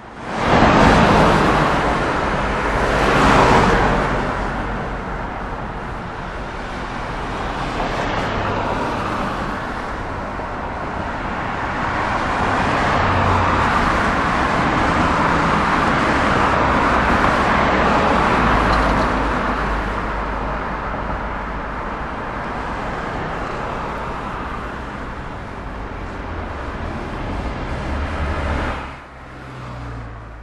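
Road traffic: cars driving by, a steady engine rumble and tyre hiss with two louder passes in the first few seconds.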